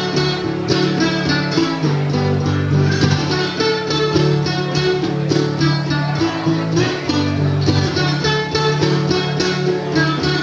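Solo acoustic guitar fingerpicked in a blues style: a steady thumbed bass line under quick runs of picked treble notes.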